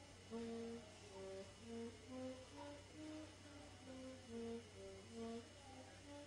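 A faint, slow tune of short separate notes moving up and down, one note at a time.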